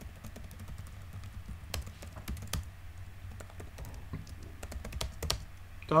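Typing on a computer keyboard: quick, irregular key clicks over a low steady hum.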